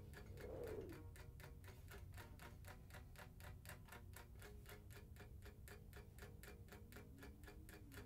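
Near silence with very faint, steady ticking, about four ticks a second, over faint low held tones.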